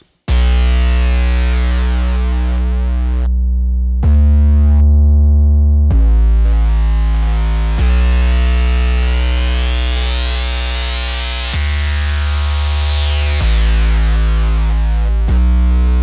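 Massive X synth sub bass playing long held notes through Neutron 4's Exciter with Trash distortion, gritty and buzzy in the top end. As the distortion's tone control is swept, the bright upper edge of the sound rises, then falls away near the end.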